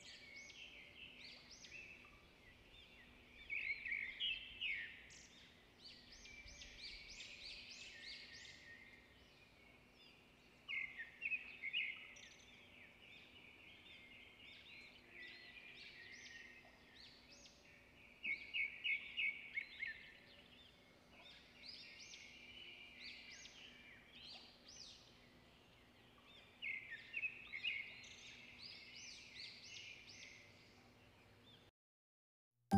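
Faint high-pitched bird chirping and twittering, coming in repeated bursts of quick sharp notes with brief lulls between them.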